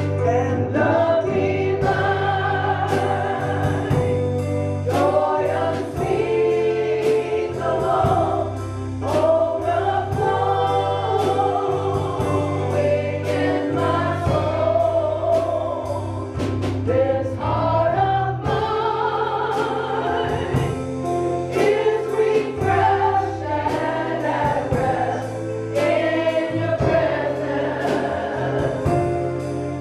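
Live gospel worship song: voices singing over an electronic keyboard with held low notes and a drum kit, with drum and cymbal hits throughout.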